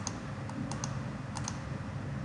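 A few light computer-input clicks, some in quick pairs, over steady low room hiss.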